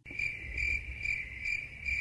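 Crickets chirping in even pulses about twice a second, starting abruptly the moment the talking stops: a 'crickets' sound effect dropped in after a joke to mark the awkward silence.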